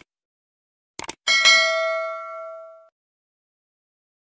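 Mouse-click sound effect, a quick double click about a second in, followed by a bright notification-bell ding that rings out and fades away over about a second and a half: the stock sound of a subscribe-button animation.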